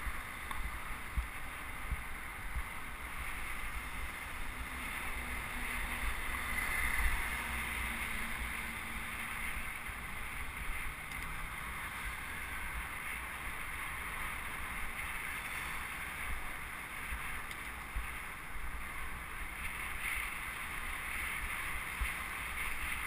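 Wind buffeting the microphone of a camera riding along on a moving bicycle, an uneven low rumble over a steady rush of road noise.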